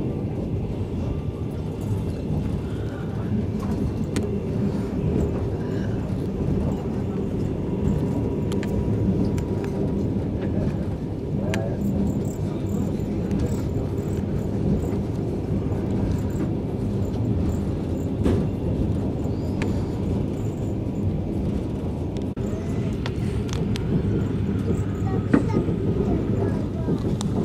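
Rossiya passenger train running, heard from inside the carriage: a steady low rumble of wheels on the rails with a few faint clicks.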